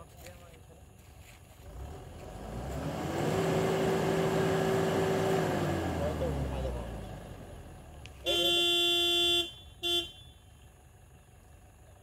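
A motor vehicle passes, its engine and tyre noise swelling and fading over about five seconds, then a vehicle horn honks: one long blast of about a second, followed by a short toot.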